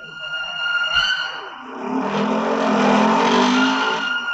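A police jeep's engine growing louder as it drives up, swelling from about two seconds in, over a steady high tone held underneath.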